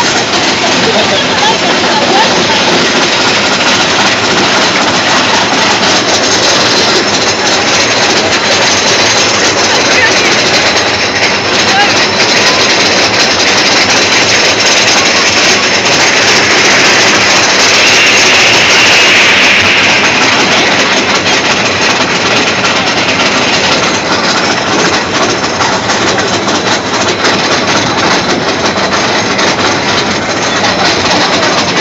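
Roller coaster train climbing its long lift hill, a loud steady mechanical rattle on the track that swells a little past the middle, with riders' voices mixed in.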